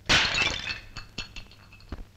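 A brittle vessel smashing with one loud crash, its pieces ringing briefly, then several small clinks as the fragments settle.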